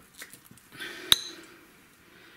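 A metal spoon strikes a lead-crystal dog bowl once with a sharp, briefly ringing clink about a second in, while wet canned dog food is being spooned out of a tin.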